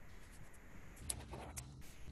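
Faint clicks and rustling over a low background hum, starting about a second in: small handling noises picked up by an open microphone in a video call.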